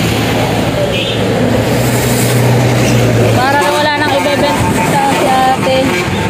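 A vehicle engine idling nearby with a steady low hum that fades out about three-quarters of the way through, under a busy background of voices.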